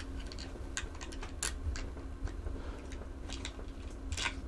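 A metal bus bar clicking and tapping against the threaded terminal studs of LiFePO4 cells as it is fitted over them: a few light, scattered clicks over a faint steady hum. The cells have just been squeezed close enough for the bar to fit.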